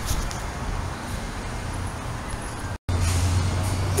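Steady outdoor traffic noise, an even hiss. It breaks off in a short dropout about three quarters of the way through, and after it a low steady hum joins in.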